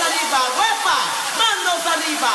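Electronic dance music in a drumless break: a loud, steady wash of hiss with a pitched synth figure that arches up and down about twice a second, and no kick drum.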